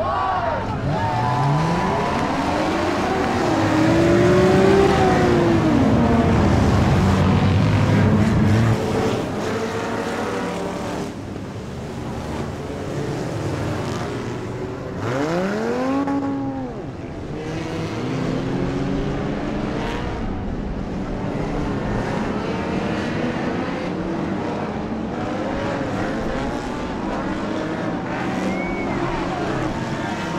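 A pack of enduro stock cars racing around a wet oval track, their engines revving up and down as they pass. It is loudest for several seconds soon after the start, as the pack goes by close. About halfway through, one engine sweeps up in pitch and back down.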